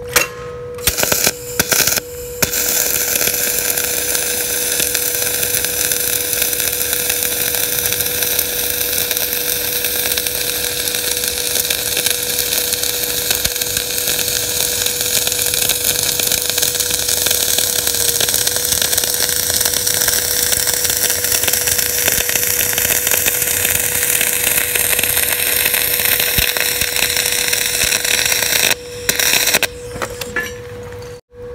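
MIG/MAG gas-shielded welding arc on steel U-channel, laying a fillet weld along an inside 90-degree corner. A few short arc starts in the first couple of seconds, then one continuous weld run of about 26 seconds that stops near the end, with a brief restart just before the close.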